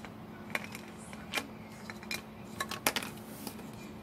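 Scattered light clicks and taps of small plastic toy pieces being handled and set down, a few of them close together near the end, over a faint steady hum.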